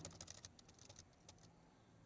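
Faint computer keyboard typing: a quick run of key clicks as button text is deleted and retyped, thinning out after about a second.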